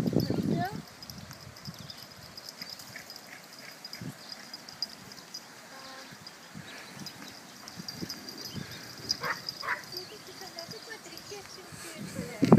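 Yorkshire terriers at play with a warthog: a loud burst of yapping in the first second, then mostly quiet with scattered short yips, two higher ones a little after nine seconds.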